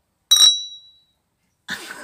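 Two stemmed wine glasses holding red wine clinking once in a toast, a bell-like ring that dies away within about a second.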